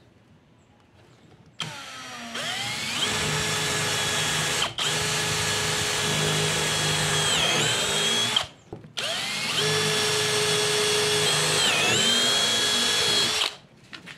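Electric drill boring into birch plywood with a wood bit, running in two stretches of several seconds with a short break between. The motor's pitch sags briefly near the end of each stretch as the bit bites into the wood.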